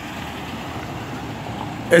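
Steady motor-vehicle noise from the street, slowly getting a little louder, with no distinct engine tone.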